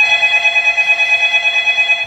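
Mobile phone ringing: a loud, rapid trilling ring of about a dozen pulses a second, held steady for about two seconds and then cut off.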